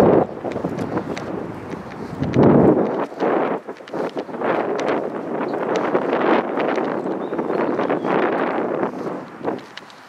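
Wind buffeting the microphone outdoors, with heavy rumbling gusts in the first few seconds, then a steadier rustling hiss with small clicks that fades near the end.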